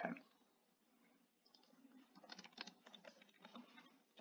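Faint computer keyboard typing: a quick run of keystroke clicks starting about a second and a half in.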